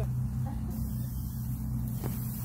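Steady low machine hum, unbroken and even.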